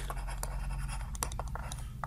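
Stylus scratching across a writing tablet as a word is handwritten, with a few light ticks of the pen tip, over a faint steady hum.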